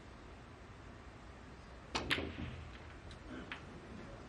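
Snooker shot: a cue tip strikes the cue ball about two seconds in, followed almost at once by a sharper click as the cue ball hits an object ball, then a few fainter clicks of balls knocking.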